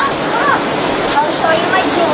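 A loud, steady hiss of noise, like heavy rain, with faint voices underneath.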